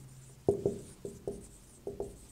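Marker pen writing on a whiteboard: five short strokes in two seconds.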